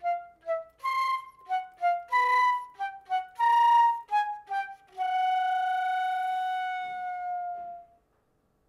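Solo concert flute playing a contemporary piece: a quick run of short, detached notes, then one long held note from about five seconds in that stops just before the end.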